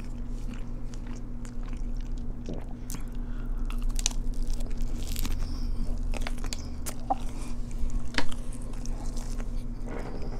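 Close-miked eating of a Korean corn dog: biting into the crisp fried coating and chewing, with many sharp crunches, the loudest about eight seconds in.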